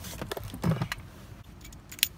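Car keys on a Volkswagen flip-key fob being handled and rattling, with short knocks and rustles and a sharp click at the very end as the key is readied for the ignition.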